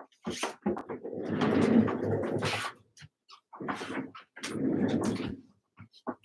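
Rustling and handling noise from a person getting up and rummaging for an object, in two spells of a second or two each.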